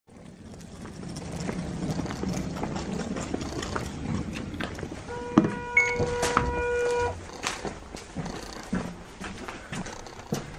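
City bus engine idling at a stop, its low rumble growing louder over the first second or so. About five seconds in, a steady electronic tone sounds for about two seconds from inside the bus, with sharp knocks of footsteps and handling on the boarding steps; the bus is quieter after that.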